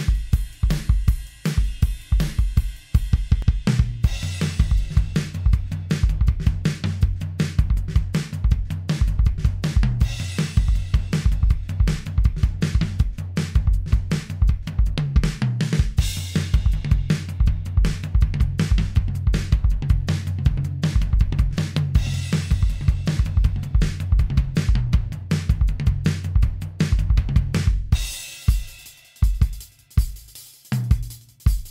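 Modern RnB-style drum beat at 160 beats per minute in 4/4: kick, snare, hi-hat and cymbals in a steady repeating pattern. The low end fills out about four seconds in, and the pattern thins to sparser hits for the last two seconds.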